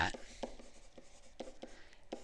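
A stylus writing on a tablet, quiet scratching with a few faint taps as handwritten words are formed.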